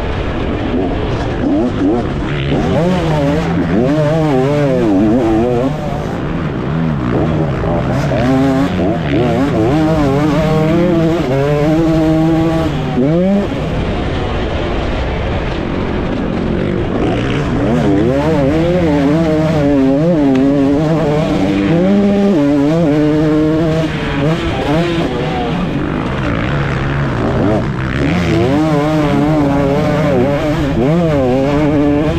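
KTM 250 SX two-stroke motocross engine being ridden hard, its pitch climbing and falling again and again as the throttle is opened, closed and the gears are shifted. About thirteen seconds in it revs up sharply and then drops off suddenly, before building again a few seconds later.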